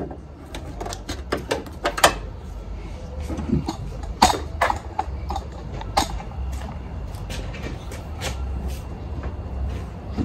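Scattered sharp plastic clicks and knocks as hands work at the trunk spoiler's retaining clips from inside the trunk lid, over a low steady rumble.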